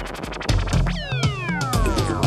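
Electronic dance music playing with a steady kick-drum beat and hi-hats. About halfway through, a pitched sound slides steadily down over about a second.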